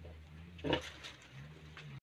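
Sow and suckling piglets: one short, sharp pig call about two-thirds of a second in, over a low steady hum.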